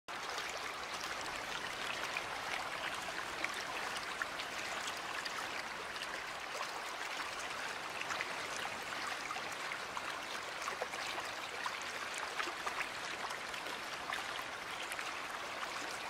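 Waterfall: a steady rush of falling water with many small splashes.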